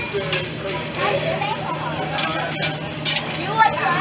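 Fried rice sizzling on a steel teppanyaki griddle while metal spatulas stir and scrape it, with a few sharp clicks of spatula on steel, under the chatter of diners.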